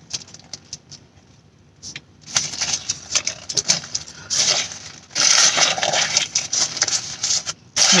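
Foil-lined paper sandwich bag crinkling and rustling as it is handled. It is faint for the first two seconds, then grows into dense crackling that is loudest in the second half.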